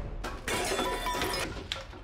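A shattering crash lasting about a second, with ringing tones in it like breaking glass, set off by a short click just before it and a sharp knock near the end.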